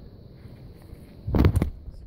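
Low room noise, then a brief rustle about a second and a half in as a fabric snapback cap is turned over close to the microphone.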